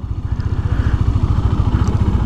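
KTM Duke 390's single-cylinder engine idling, a steady, evenly pulsing beat.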